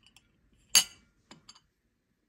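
A small glass spoon clinks once, sharply, against a ceramic saucer about three-quarters of a second in, followed by two faint ticks. The spoon is cracked.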